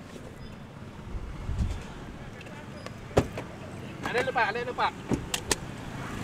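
Car traffic noise heard from a car in slow traffic: a low rumble, a sharp click about three seconds in, a brief voice-like sound around four seconds, and a few more clicks near the end.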